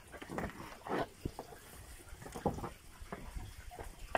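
Black-and-white dairy cows crowded on wet, muddy ground: irregular short sounds of the animals shifting and stepping in the mud and water, a little louder about a second in and midway.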